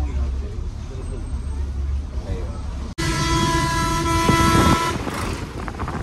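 Low, steady engine rumble inside a moving bus. About three seconds in the sound cuts off abruptly, and a loud vehicle horn then sounds steadily for about two seconds over road noise.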